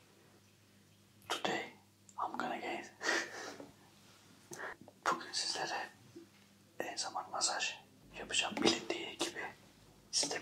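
Only speech: a man talking softly in short phrases with pauses between them.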